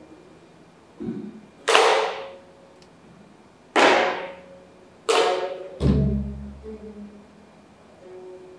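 Geomungo played in slow, widely spaced strokes: three strong plucks with the bamboo stick, each a sharp attack followed by a ringing low note. A buk barrel drum answers with a soft low thud about a second in and a deep stroke that rings on for about a second, just after the third pluck.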